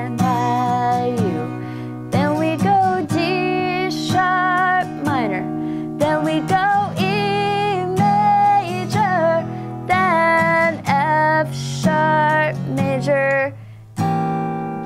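Acoustic guitar strummed with a pick through a chorus chord progression, starting on a barred B major, while a woman sings the melody over it.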